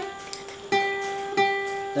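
Single notes picked on an acoustic guitar, part of a lead melody line: a note rings on, then the same note is picked twice, about a second in and again near a second and a half, each left to ring.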